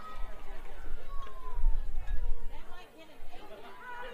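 Indistinct chatter of spectators and players at a youth baseball game, with a low rumble about a second and a half in.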